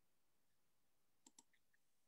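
Near silence, broken by two faint quick clicks about a second and a quarter in.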